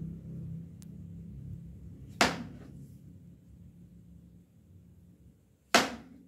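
Two sharp chops of a knife cutting through a papaya and striking the cutting board, about three and a half seconds apart, each dying away quickly.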